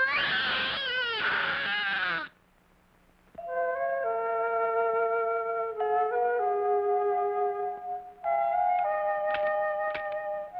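A cartoon boy's loud, wavering wail lasts about two seconds and then cuts off abruptly. After a second of near silence, soft background music of long held woodwind notes begins, its chords shifting slowly.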